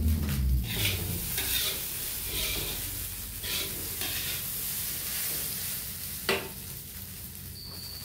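Fried rice sizzling in a wok over a gas burner while a spatula stirs and scrapes it, in strokes about once a second over the first few seconds. A single sharp clack a little past six seconds in.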